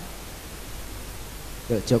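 Steady, even hiss of background noise while the talk pauses; a man's voice comes back near the end.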